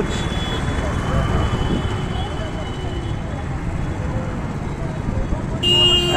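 Street traffic: a steady low rumble of motorbikes and auto-rickshaws running and passing on the road, with a brief high tone just before the end.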